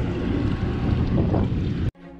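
Wind buffeting the microphone over the sound of open water aboard a drifting boat; it cuts off abruptly just before the end.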